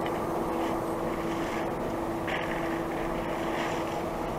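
A steady mechanical hum with one constant mid-pitched tone over an even rushing noise, unchanging in level.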